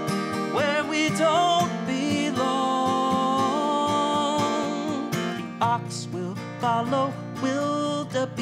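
A man singing long held notes with vibrato while strumming a Takamine acoustic guitar in a steady rhythm.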